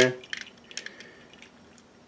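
A few faint clicks and taps of hard plastic as a toy blaster accessory is fitted into an action figure's hand, most of them in the first second.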